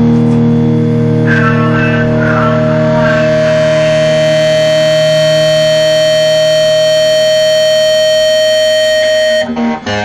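Layered guitars tuned down a half step, distorted electric guitars with an acoustic, holding a final chord that rings out steadily, with a few higher notes over it in the first few seconds. The chord cuts off suddenly near the end, followed by a few short scraps of string noise.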